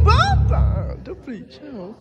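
Live keyboard band music with heavy bass that stops about a second in, over it a loud high call that slides up and down in pitch, followed by several quieter, shorter sliding calls.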